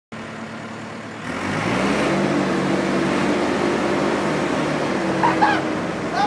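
Forklift engine running steadily, revving up about a second in as the forks lift. Near the end come a few brief high-pitched squeals from the man hanging on the forks.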